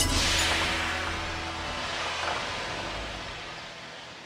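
The fading tail of a car crash into a concrete barrier, a dying hiss and low rumble that dies away over a few seconds, with a film score underneath.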